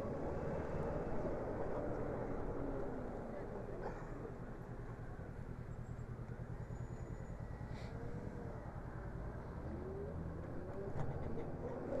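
Zero SR electric motorcycle riding slowly between lines of queued cars: a steady low rumble of road and traffic noise, with a faint whine that glides up and down a few times.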